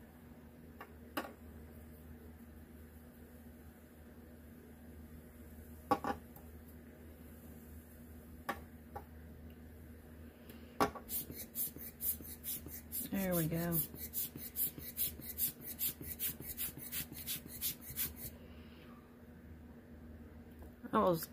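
Handheld rubber bulb air blower squeezed over and over, sending short puffs of air in a quick regular run of about three or four a second for some seven seconds from about halfway in, blowing wet alcohol ink across the paper. Before that, a few single light clicks and taps, and partway through the puffing a brief vocal sound.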